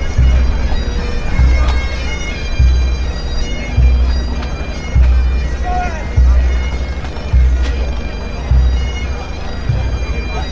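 Pipe band playing on the march: Great Highland bagpipes with their steady drones under the chanter tune, and drums, with a bass drum stroke landing about every 1.2 seconds.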